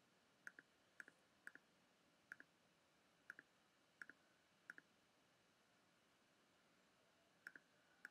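Faint computer mouse button clicks, each a quick press-and-release pair, about eight of them at irregular intervals with a pause of nearly three seconds in the middle, as edges are selected one by one in a 3D modelling program.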